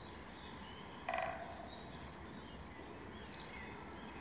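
A single short, rattling, rasping animal call about a second in, over a steady low background hum, with a few faint, high, brief bird chirps.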